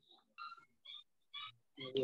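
A faint animal call repeating in the background through an unmuted microphone on a video call: four short calls, about two a second.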